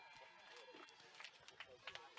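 Near silence: faint open-air ambience of a soccer field during play, with faint distant voices.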